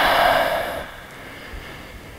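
A man's long audible exhale through the mouth, a breathy rush that fades out about a second in, leaving quiet room tone.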